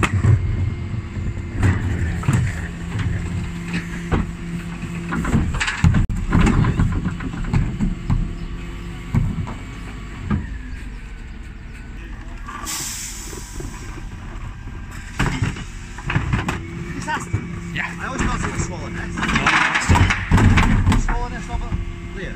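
Dennis Elite 6 bin lorry running with a steady hum from its engine and hydraulics while the Terberg OmniDE lift raises and tips plastic wheelie bins. There is heavy bin clattering and banging near the start, about six seconds in, and again near the end. A short hiss of air comes about thirteen seconds in.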